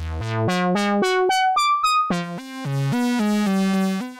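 Doepfer modular synthesizer playing a sequenced run of short notes, one about every quarter second: an A155 sequencer drives an A111 VCO through an A121 multimode filter. The notes climb to a few high notes about midway, then drop back to lower ones. The A174 joystick is moving the sound around a quadraphonic field through VCAs.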